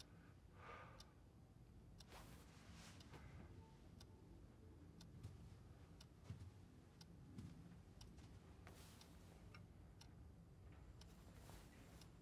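A clock ticking faintly, about once a second, in a near-silent room, with a few soft rustles.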